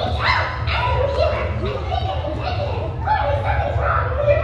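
High-pitched voices yelling and squealing in a large hall, over a steady low rumble.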